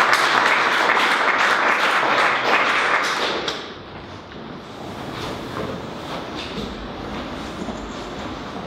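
Audience applauding, a dense crackle of clapping that stops about three and a half seconds in, leaving quieter room noise with a few faint knocks.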